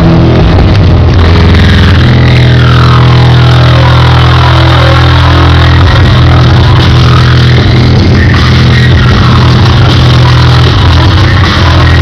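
Live human-beatbox and vocal-looping electronic music played very loudly through a club sound system: a sustained deep bass drone with tones sweeping up and down over it, twice, giving an engine-revving feel.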